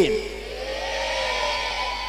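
A motor vehicle engine accelerating: its pitch rises over about the first second, then holds steady.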